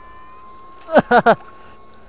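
A steady thin electrical whine, typical of a battery electric fish shocker's inverter running while the pole is in the water. About a second in, a person makes three quick short vocal sounds, the loudest thing here.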